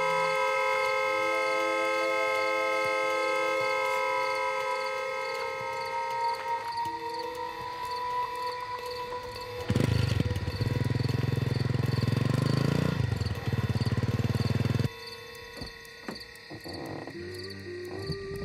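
Film soundtrack: a sustained synthesized chord held for the first seven seconds, over a regular high chirping about three times a second. About ten seconds in, a loud low engine rumble of an approaching vehicle rises in pitch, then cuts off abruptly about five seconds later.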